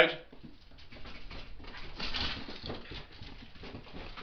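A dog moving about excitedly: quick patters, clicks and scuffles of its claws on a hard floor.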